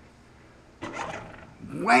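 Sensible Eco Living motion-sensor trash can lid opening by itself when a hand passes over the sensor: a short, sudden sound starting just under a second in, followed by a man exclaiming "wham" as the lid springs open.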